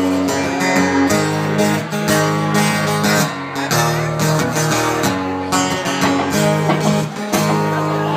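Solo guitar strumming the instrumental intro of a song, changing chord about once a second, with no singing.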